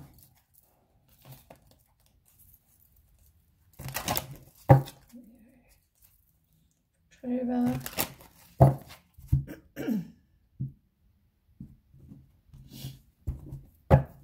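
A deck of cards being shuffled by hand, heard as short rustling bursts and sharp snaps and taps of the cards, with a few brief murmurs of a woman's voice.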